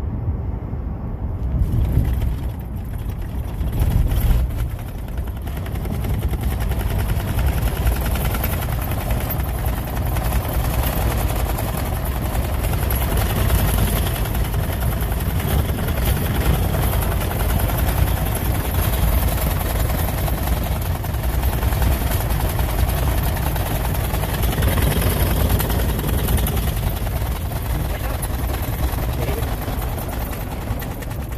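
Ford pickup cab at about 60 mph on the freeway: a steady deep road and engine rumble with a hiss of wind and tyre noise over it.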